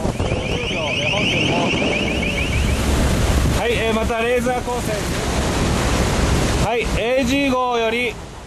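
Wind buffeting the microphone over the rush of the sea on a ship's deck at sea. A rapid high-pitched pulsed tone sounds for about the first three seconds, and short bursts of voices come in around the middle and again near the end.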